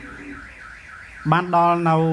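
A high electronic alarm tone warbling up and down about four times a second, steady throughout. From about a second and a half in, a man's voice, amplified through a microphone, draws out one syllable over it, louder than the tone.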